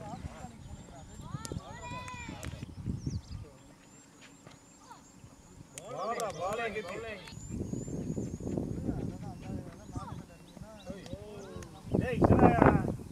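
Shouted calls from players on a cricket field, a short burst about two seconds in and a louder cluster around six seconds in, over a low rumble and a faint, high, evenly repeating chirp.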